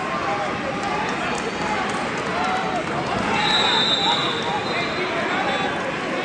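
Many people talking at once in a large gym, a steady babble of voices. A thin high steady tone sounds for about two seconds in the second half.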